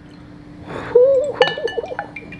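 Wooden spoon clinking against a glass bowl about halfway through, the glass ringing briefly, with a lighter tap near the end. A short wavering hum comes in just before the clink.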